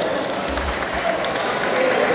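Spectators clapping, a scattered patter of hand claps, with voices talking over it.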